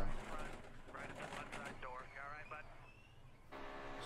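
Faint race-broadcast audio from NASCAR onboard footage: a commentator's voice under race-car noise. About three and a half seconds in it cuts to the steady drone of a stock-car engine from the next onboard clip.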